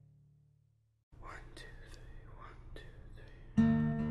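The previous track fades out and leaves a brief silence. Faint breathy, scratchy sounds follow, then loud acoustic guitar chords are strummed near the end, opening a new song.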